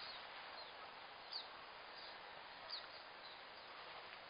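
Faint outdoor ambience, a steady quiet hiss, with two brief high chirps from a bird, one a little over a second in and another under three seconds in.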